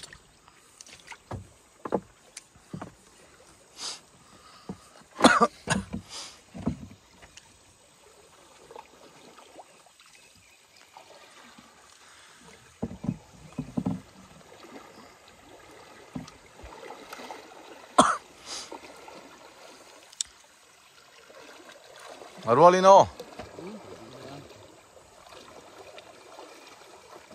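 Irregular splashing and sloshing of river water as people wade waist-deep and haul in cast nets, with a run of sharp splashes a few seconds in and more around 13 and 18 seconds. A short shout comes near the end.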